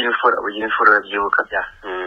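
Speech only: a person talking continuously, with a narrow, radio-like sound.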